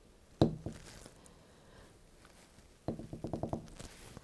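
Metal clicks from a CPU delidding tool being turned with a hex key under heavy force to shift the heat spreader: one sharp click about half a second in, then a quick run of about eight clicks near three seconds.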